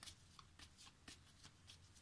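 Near silence with faint, scattered soft clicks and rustles of divination cards being handled.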